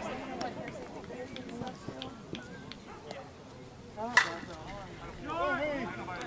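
A slowpitch softball bat hits the ball once, a single sharp crack about four seconds in. About a second after the hit, voices of players and onlookers shout out.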